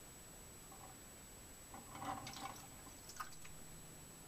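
A small splash and brief sloshing of water as a mouse tips off the trap's spinning paddle into the water-filled bucket, followed by a single sharp click about a second later.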